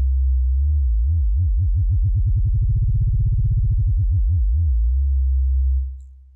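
Aalto CM software synthesizer holding a low sine-wave note, its pitch modulated by the LFO under mod-wheel control. About a second in a vibrato starts and grows faster and deeper towards the middle, then slows and narrows back to a steady tone, and the note fades out near the end.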